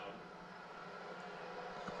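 Low, steady stadium crowd noise from a televised football broadcast, heard through the TV's speakers in the room between commentary lines, with a faint click near the end.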